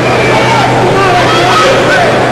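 Arena crowd noise: many spectators shouting and calling out at once, their voices overlapping, over a steady low hum.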